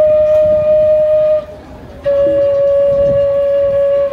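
Two long, steady notes on a flute-like wind instrument played into a microphone, the second a little lower than the first, with a short break between them about a second and a half in.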